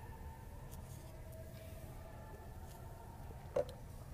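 Faint indoor ice rink ambience: a steady low hum with faint clicks and clatter of play on the far ice, and one sharp knock a little before the end.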